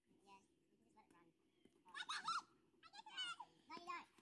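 Faint, distant children's voices calling out: three short calls in the second half.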